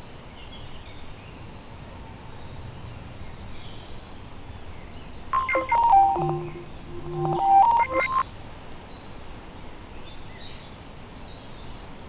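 Two short electronic tone phrases, each a few beeps stepping between pitches, about a second and a half apart in the middle of the stretch. Under them runs a steady outdoor background hiss with faint birds.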